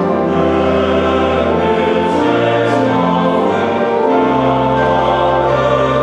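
Male-voice choir singing a hymn in long held chords, accompanied by an organ whose low bass notes change every second or two beneath the voices.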